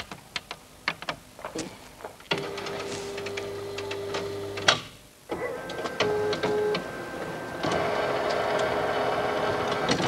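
Photocopier making a reduced copy: scattered clicks, then a steady hum for a couple of seconds that ends in a sharp clack. After a short lull come two brief tones, and for the last two seconds or so a louder, steady mechanical run.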